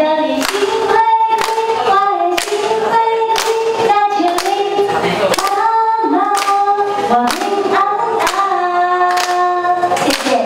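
A woman singing with long held notes into a handheld microphone, while the people around her clap along in time, about two claps a second.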